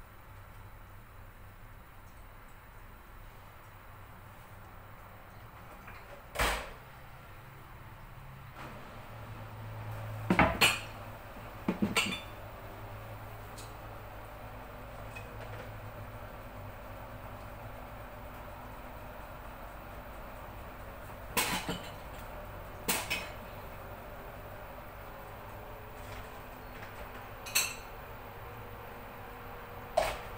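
Kitchen clatter: scattered sharp clinks and knocks of pots and utensils, some in quick pairs, over a steady low hum.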